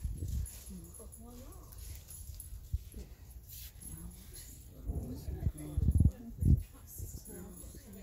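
Indistinct voices murmuring in the background, with low bumping and rubbing of the phone being handled as it pans, loudest about five to six and a half seconds in.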